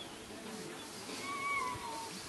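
A dog whining: one thin, high, slightly falling whine starting a little over a second in.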